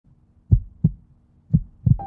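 Heartbeat sound effect: two lub-dub double thumps about a second apart, over a faint low steady hum.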